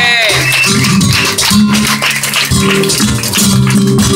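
Live flamenco: a flamenco guitar and cajón accompany a sung voice that wavers in pitch at the start, with dense percussive strikes throughout.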